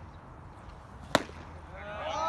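A baseball bat striking a pitched ball: one sharp crack a little past a second in.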